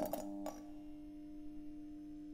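Channel logo ident sound effect: a few sharp clicks in the first half second, then a steady humming tone held.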